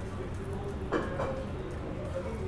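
Restaurant room tone: a steady low hum with faint background voices, and one short sharp sound about a second in.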